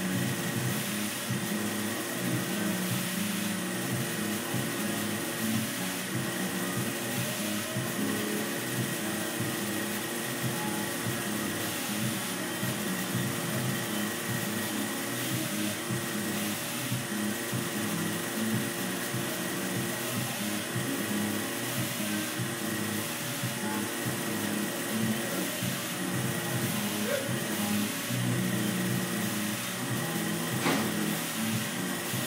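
Steady, unbroken whir of an electric ventilation blower moving air, a motor-driven fan sound with a constant hum under it.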